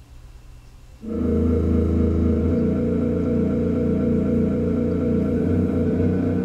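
Synthesized MIDI music generated from UV-B sunlight measurements: after about a second of faint low hum, the tune comes in abruptly and plays on as a run of overlapping sustained notes. The gap before it is the stretch where a thicker cloud blocked the UV rays, and the music resumes as the UV returns.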